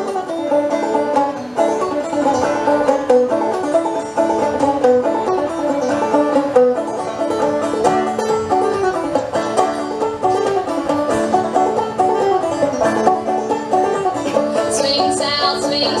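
Solo banjo playing an instrumental break of an old-time tune, a steady run of plucked notes. A voice starts singing right at the end.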